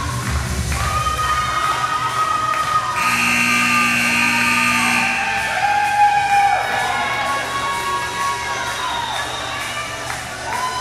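Music playing through a gymnasium's sound system, its bass beat dropping out about a second and a half in, followed by long drawn-out cheers and whoops from several voices echoing in the hall.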